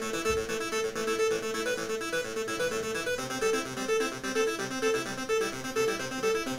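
Serum software synthesizer on its default init patch, a plain saw-wave tone, playing back a simple repeating melody of short stepped notes in Ableton Live.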